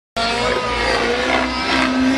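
An aircraft engine running at a steady droning pitch that wavers slightly.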